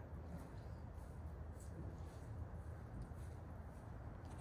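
Quiet outdoor background noise: a steady low rumble with a few faint ticks.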